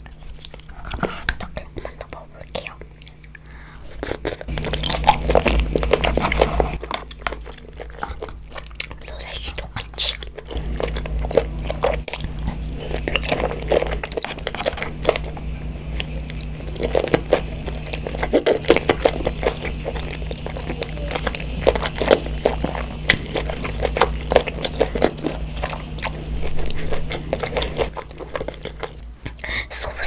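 Close-miked chewing and mouth sounds of a child eating tteokbokki, chewy rice cakes in spicy sauce, with many small irregular clicks and smacks. A low steady hum sits underneath.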